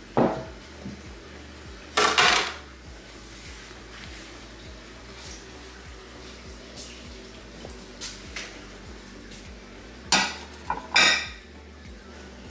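Ceramic plates clinking and clattering as they are picked up and stacked, in a few separate bursts: the loudest about two seconds in and two more near the end.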